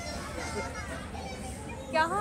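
Faint voices in the background over a steady low hum of a busy indoor shop.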